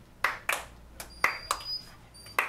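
A few people clapping: scattered, separate hand claps, about five or six in two seconds, rather than a full round of applause.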